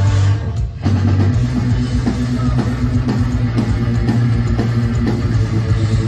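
Live post-hardcore band playing an instrumental passage on electric guitars, bass guitar and drum kit, without vocals. The sound drops away briefly about half a second in, then the full band comes back in with held guitar notes.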